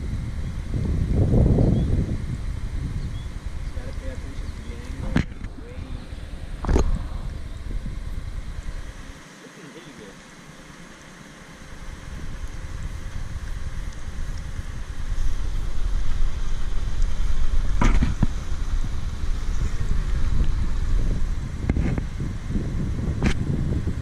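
Wind rumbling on the microphone over the steady low running of a truck crane's engine as it holds the boom, with a few sharp knocks about five, seven, eighteen and twenty-three seconds in, and faint voices near the start and near the end.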